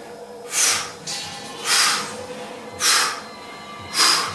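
A man breathing out sharply four times, about once a second, one hard exhale with each dumbbell curl. Music plays faintly underneath.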